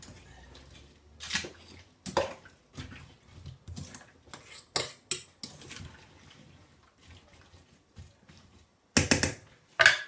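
A metal fork scraping and clinking in a stainless steel stockpot as chopped vegetables are stirred, in scattered short knocks. A louder clatter comes about nine seconds in.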